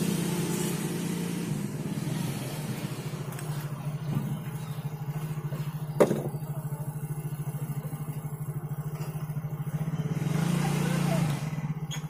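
A steady, low, pulsing engine-like hum, as of a motor idling nearby, with one sharp metal click about six seconds in as pliers work at the rubber seal in the end of a submersible pump casing.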